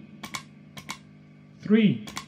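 Footswitch of a Rowin Looper 3 pedal clicked underfoot: two pairs of sharp mechanical clicks, press and release, about half a second apart.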